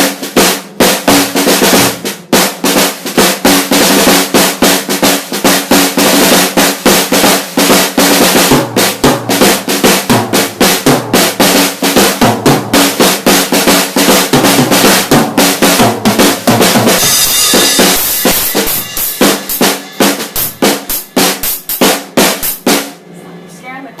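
Acoustic drum kit played in a steady, busy groove of snare, bass drum and Sabian Pro cymbals. A cymbal crash rings out about two-thirds of the way through, and the playing stops just before the end.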